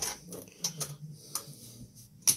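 A handful of light, sharp metallic clicks and taps as a flat-blade screwdriver works against the 18650 cells and spot-welded nickel strip of a stripped power-tool battery pack.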